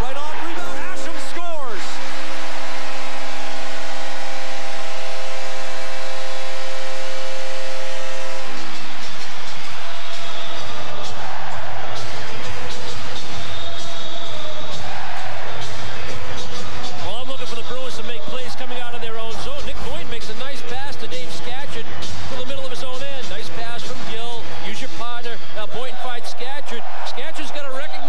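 An arena goal horn blows one long steady blast for about eight seconds after a home Islanders goal, over a cheering crowd, followed by crowd noise with arena music.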